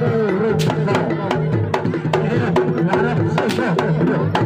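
Live Jaranan dance accompaniment: quick, regular hand-drum strokes on kendang drums over a steady low tone and a wavering melodic line.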